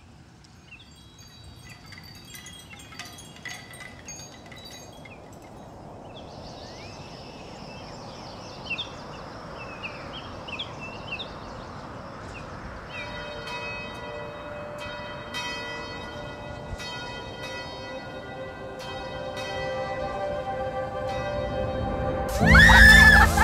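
Bells ringing with repeated strikes, their tones overlapping and getting louder from about halfway on. In the first half, short high chirps sound over a slowly rising swell of noise.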